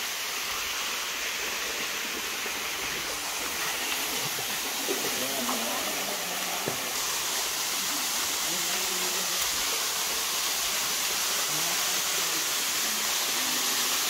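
Small jungle waterfall pouring into a pool: a steady rush of falling water that grows a little louder about halfway through, with faint voices of people nearby.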